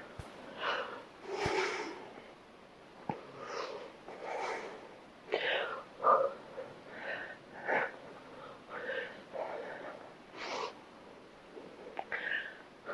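A woman's heavy breathing during crunches: short, breathy exhales about once a second, pushed out with the effort of each lift.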